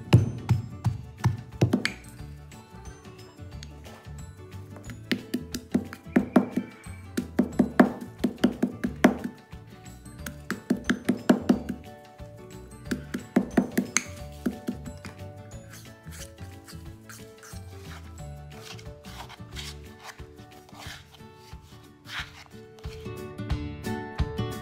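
Stone pestle pounding and grinding a thick paste in a stone mortar, in bursts of quick knocks several a second, over background music.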